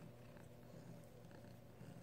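A cat purring faintly, a low steady rumble.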